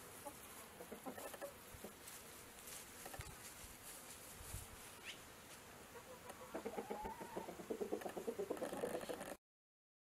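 Chickens clucking in short repeated calls, growing busier and louder in the last few seconds, then cutting off suddenly near the end.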